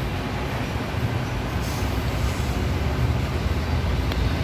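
Mitsubishi Fuso FM215 truck's 6D14 inline-six diesel engine running with a steady low rumble, growing slightly louder toward the end.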